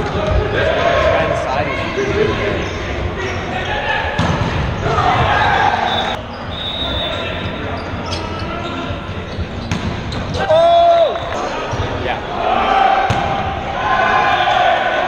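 Volleyball play in an echoing gymnasium: sharp smacks of the ball being served and hit, with players calling and shouting across the hall. One loud drawn-out call comes about ten and a half seconds in.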